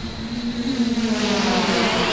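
Multirotor drone's propellers buzzing steadily in flight, the pitch wavering slightly.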